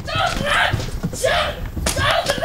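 Excited young voices yelling without clear words, with one sharp knock near the end.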